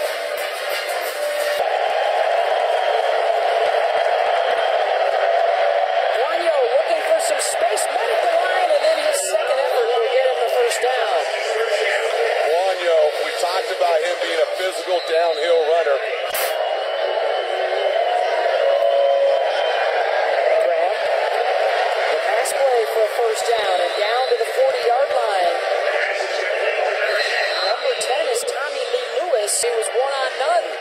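Football stadium crowd noise: a dense, steady wash of many voices talking and shouting at once, with music mixed in, sounding thin with no low end.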